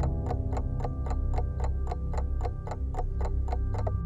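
Clock ticking quickly and evenly, about four ticks a second, over a low held drone; the ticking stops abruptly at the end.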